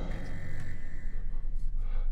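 Low, steady rumbling drone of the soundtrack's background ambience, with no distinct events.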